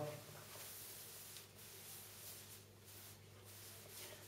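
Very quiet: faint soft swishes of a foam brush spreading varnish over an inkjet canvas print, coming and going with the strokes, over a low steady hum.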